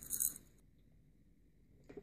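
A handful of small steel screws rattling and clinking in a small metal cup, a brief jingle in the first half second.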